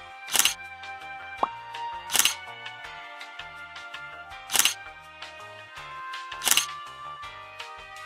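Background music: held instrument notes with a sharp percussive hit about every two seconds.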